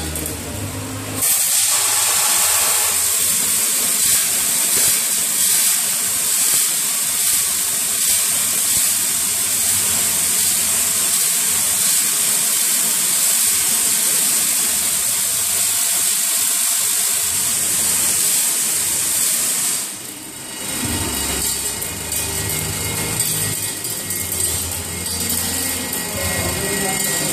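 Hardware weighing and packing machine running: vibratory bowl feeders and conveyors carrying screws, making a loud, steady hiss and rattle. From about a second in until about two-thirds of the way through it is an even hiss with little low end, then a fuller machine noise with more low hum returns.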